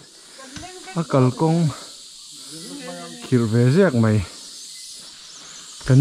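A voice speaking two short phrases over a steady, faint, high-pitched insect drone.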